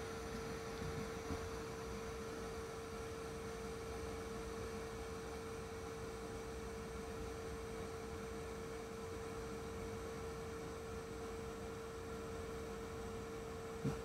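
A steady hum held at one pitch over a faint, even hiss, the background noise of electrical bench equipment, with a faint tick a little over a second in.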